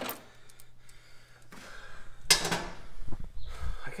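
Rustling and handling noise as the camera is moved: a brief scraping rush a little past two seconds in, then low bumps, over a faint steady hum.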